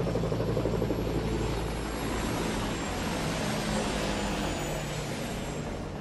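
Helicopter in flight, a steady rotor and turbine noise with a low hum underneath, easing off slightly toward the end.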